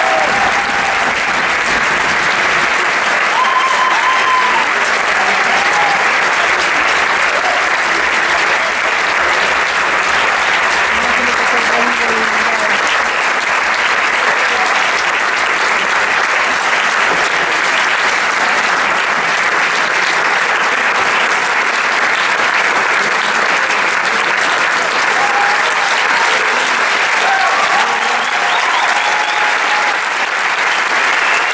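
A theatre audience and cast applauding loudly and steadily, with a few voices calling out over the clapping.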